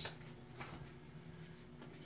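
A few faint clicks of playing cards being handled and dealt onto a cloth-covered mat, over a low steady room hum.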